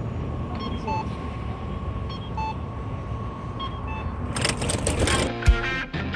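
Outdoor street noise with a low traffic rumble and a few faint short beeps; about four seconds in, rock music with electric guitar and a heavy drum beat starts.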